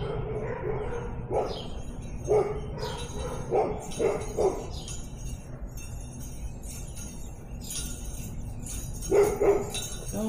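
A dog barking: a run of short barks in the first half, and two more near the end.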